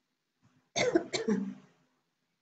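A person coughing, two quick coughs about a second in.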